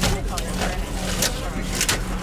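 Moving bus heard from inside: a steady low engine drone, with a few short sharp clicks or rattles.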